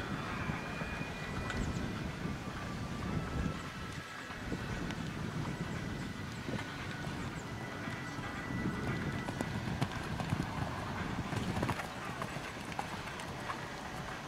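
A horse's hoofbeats on sand arena footing as it canters.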